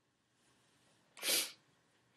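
A single short, sharp sneeze a little past halfway, preceded by a faint intake of breath.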